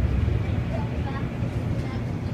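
Moving train heard from inside the passenger car: a steady, low rumble of the ride.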